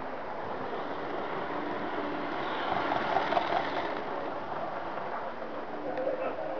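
HO-scale model train running past on the track, a whirring rumble that grows louder to a peak about three seconds in and then eases off.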